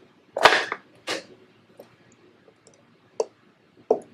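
Sharp plastic clicks and snaps as a pipette tip box lid is closed and a micropipette is handled. The loudest snap comes about half a second in, another about a second in, and two lighter clicks near the end.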